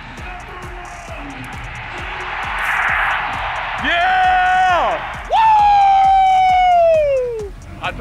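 Stadium crowd cheering that swells, then an amplified announcer's voice drawing out a name in two long held calls over the crowd, the second falling away at its end.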